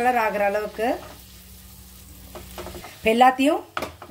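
Small banana-rava balls shallow-frying in coconut oil in a nonstick pan: a soft, steady sizzle, with a metal spatula stirring and turning them.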